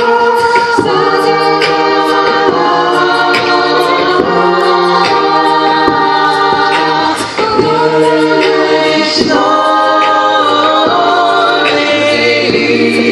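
Mixed a cappella vocal ensemble singing into microphones: sustained harmonised chords that shift every second or so, over a low bass line.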